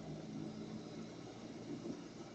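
Car engine running at low speed with tyre and road noise, a steady low hum heard from inside the cabin.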